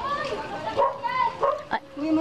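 Voices chattering in short, high-pitched calls, like children's voices, with a brief click near the end.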